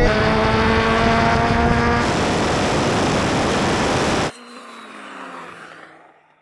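A performance car engine at full throttle, its note rising steadily as it accelerates, with heavy wind and road roar. About two seconds in the engine note gives way to a loud, even rushing roar. A little after four seconds this cuts off abruptly to a faint, distant car sound that fades away.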